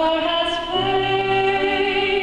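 A young woman singing a slow song into a microphone, holding long notes and moving to a new note about a second in, with grand piano accompaniment underneath.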